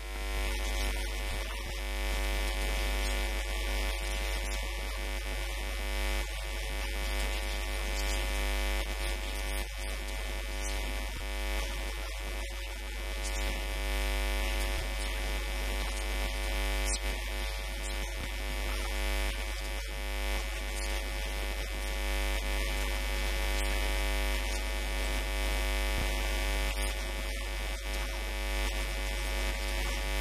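Steady electrical mains hum with a buzzing stack of overtones, interference picked up by the recording microphone.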